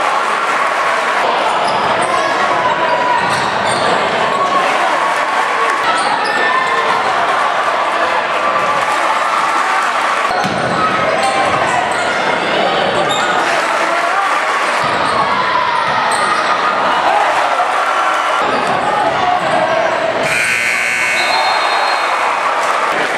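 Basketball game in a gym: a steady din of crowd voices and cheering with the ball bouncing on the hardwood floor. Near the end a steady-pitched horn sounds for about a second, the buzzer ending the first quarter.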